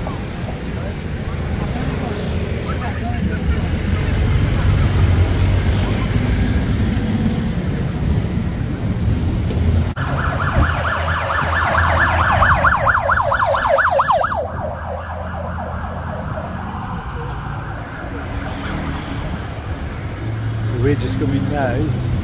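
Engine and road noise heard from the open back of a moving songthaew (baht bus) in traffic. About ten seconds in, a fast-warbling siren-like tone sounds for about four seconds and then stops.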